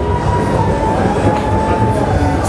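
Busy trade-show hall din: a dense low rumble with a pulsing bass and a thin held tone that dips slightly in pitch about one and a half seconds in.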